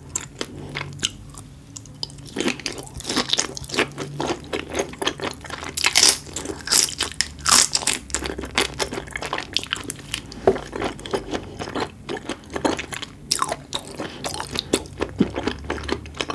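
Close-miked mouth sounds of biting and chewing raw red shrimp dipped in sauce: a dense run of sharp, wet clicks. It is sparse at first, then thickens about two and a half seconds in.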